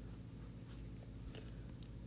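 Faint background with a steady low hum and light scratchy noise; no distinct event.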